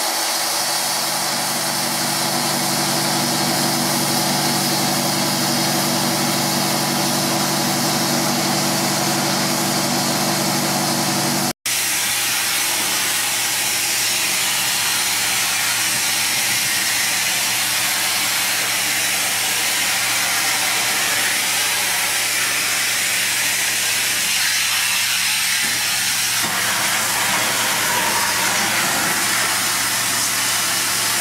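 A TM13G cleaning machine's engine runs steadily, with a hiss over it. After a sudden cut about a third of the way in, there is a loud, steady hiss of the hard-surface cleaning tool spraying water and vacuuming it back up over a brick floor, with the machine humming underneath.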